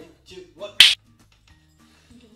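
A single sharp finger snap, a little under a second in, after a brief vocal sound.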